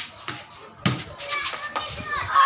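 A single sharp knock of a cricket ball about a second in, during a game of street cricket, with children's voices around it.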